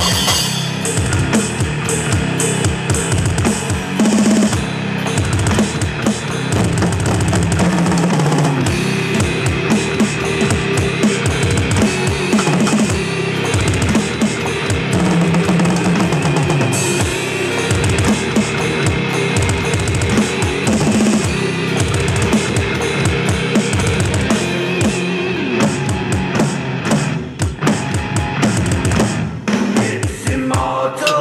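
Heavy metal song with fast drumming played on an electronic drum kit, an instrumental stretch with no vocals; the drumming breaks off briefly near the end.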